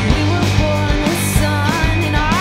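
Surf-pop rock band playing live: a woman singing over drums, bass and guitar with a steady beat.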